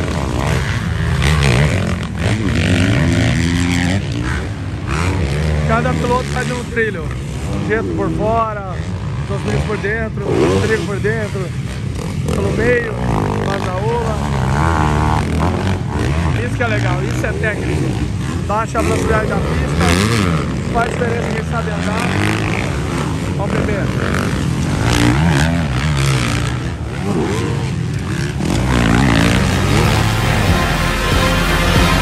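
Several motocross bikes racing through a rutted dirt corner, their engines revving up and down again and again, with a steady low rumble of more bikes on the track. Voices are heard over the engines.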